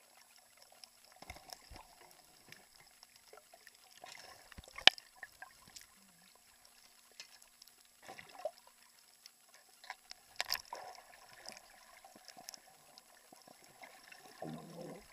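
Water moving around a camera held underwater, with scattered clicks and knocks. The sharpest click comes about five seconds in and another cluster about ten seconds in.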